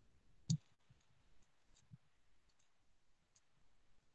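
One sharp click or tap about half a second in, with a few faint ticks after it over quiet room tone.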